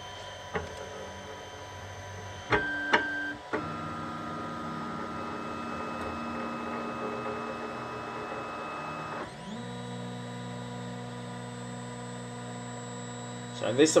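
FlashForge Guider 2 3D printer's stepper motors driving the axes during its automatic Z-height (extruder) calibration, a steady whine of several held tones. A short louder buzz with a couple of clicks comes about two and a half seconds in. The pitch changes about three and a half seconds in, then glides up to a new, lower set of tones near nine seconds, as the motion changes.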